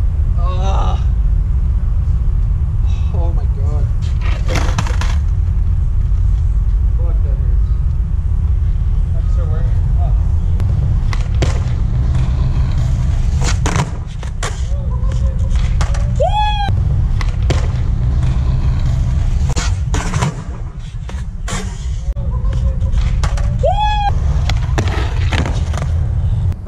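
Skateboard on concrete: urethane wheels rolling with a heavy low rumble, and many sharp clacks and knocks as the board is popped, lands and strikes the concrete ledge during repeated 5-0 bigspin-out attempts. Two short rising squeaks come about two-thirds of the way in and near the end.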